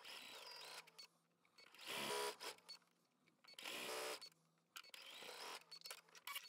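Home sewing machine stitching a seam, running in two short bursts, about two seconds in and again about four seconds in; otherwise faint.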